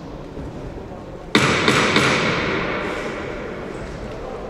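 Boxing ring bell struck three times in quick succession, the strikes about a third of a second apart, then ringing and fading over a couple of seconds in a large hall.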